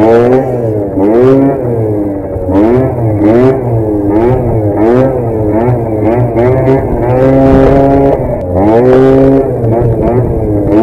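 Genuine Roughhouse 50 scooter's small two-stroke engine revving up and down over and over, the throttle blipped about once a second, with one longer held rev near the end, as the rider works the throttle to lift and hold the front wheel in a wheelie.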